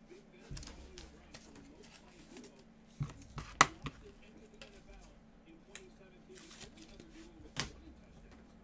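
Trading cards and their packaging being handled on a table: a few sharp clicks and taps, the loudest about halfway through, with a brief rustle of card stock near the end.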